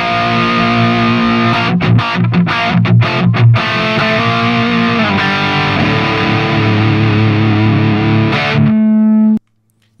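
Electric guitar on its bridge humbucker, played through the Brainworx RockRack amp-simulator plugin on its driven Modern Rock setting: a chugging, stop-start riff for the first few seconds, then ringing chords and a held note. The held note cuts off abruptly near the end as the plugin's gate shuts.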